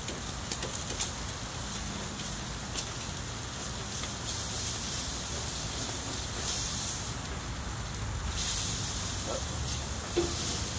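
Meat sizzling on the hot grates of a propane gas grill, a steady hiss, with a few light clicks of tongs and spatula against the grate in the first second.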